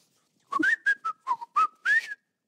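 A short flute-like whistled tune of about seven quick, breathy notes, starting about half a second in and ending on a rising note, mimed as if played on a rolled cardboard tube held like a flute.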